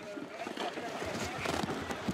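Steady rush of wind and rough sea water, with some irregular low rumbling.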